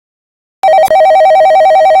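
Telephone ringing sound effect: a loud electronic trill warbling rapidly between two notes, starting about half a second in and lasting about a second and a half, as a call is placed.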